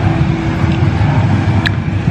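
Steady low rumble of street traffic, with a faint click or two in the second half.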